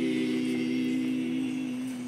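Unaccompanied voices singing a hymn, holding one long steady note at its close, fading slightly toward the end.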